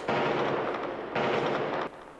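Gunfire on archival 1994 footage: two sudden blasts about a second apart, each trailing off over most of a second.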